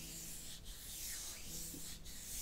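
Wooden hairbrush stroked through long hair, a scratchy brushing sound repeated about three times.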